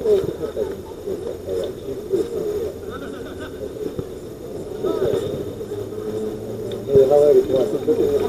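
Players' shouts and calls carrying across an outdoor football pitch, with a short knock about seven seconds in, likely the ball being struck.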